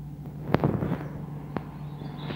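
Two sharp knocks about a second apart, the first louder, over a steady low hum.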